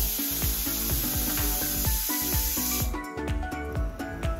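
Pressure cooker whistle: steam hissing hard through the weight valve, cutting off suddenly about three seconds in. Background music with a steady beat plays underneath.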